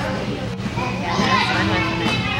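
Children's voices in the background, several talking and calling out at once, with no single clear event.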